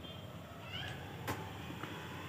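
Quiet room tone with one faint, short animal call rising in pitch a little under a second in, and a single soft click a little past halfway.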